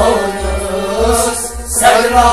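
A male singer holding a long, wavering sung line of a kalam, with a steady low beat pulsing about twice a second beneath it.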